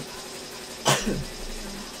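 A single short cough from a woman, about a second in, over a faint steady hum.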